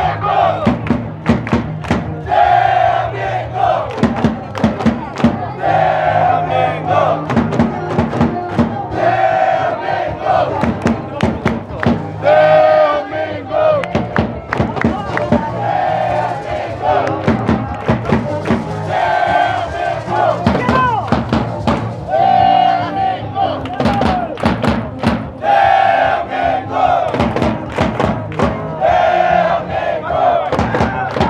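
A crowd of South Korea football supporters chanting in unison, repeating a short shouted phrase about every three seconds, over a steady bass drum beat.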